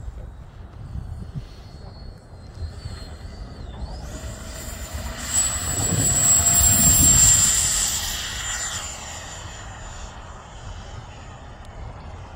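Wemotec 100 mm electric ducted fan of a Black Horse Viper XL model jet, a high whine that climbs gently as the fan spools up. About four seconds in it swells into a loud whine and rush of air as the jet takes off, peaking around six to seven seconds and fading as it climbs away.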